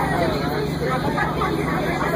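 Crown Supercoach Series 2 school bus driving, heard from inside the cabin as a steady low engine drone, with passengers' voices over it.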